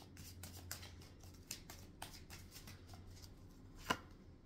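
A deck of oracle cards shuffled by hand: quiet, irregular slides and flicks of the cards several times a second, with one sharper click near the end.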